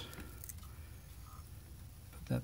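Faint handling noise as fingers fold a broken plastic Apple IIgs case latch piece back into place on a painter's-tape hinge: a few soft clicks over a low hum.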